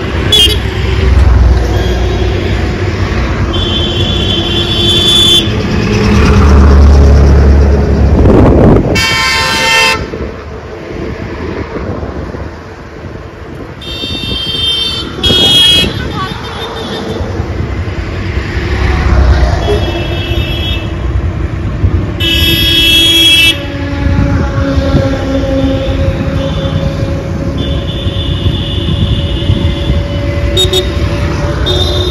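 Road traffic with engines rumbling and vehicle horns honking again and again, several horns overlapping in short blasts.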